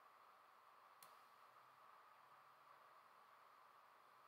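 Near silence: faint steady room hiss, with one soft mouse click about a second in.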